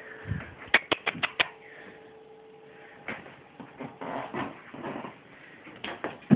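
A quick run of five sharp clicks about a second in, then scattered light taps and scuffles as a pet scrambles after a toy.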